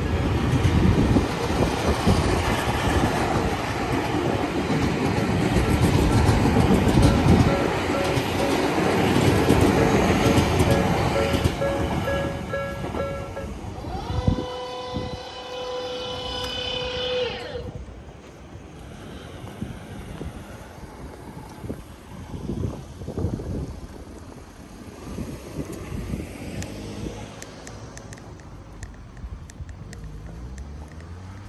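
An electric commuter train of the Tobu Tojo Line running past close by, its wheels rumbling on the rails for about twelve seconds, with a repeating bell-like tone sounding through the noise. A few seconds later a steady, higher multi-tone sound drops in pitch and stops, leaving quieter street sound.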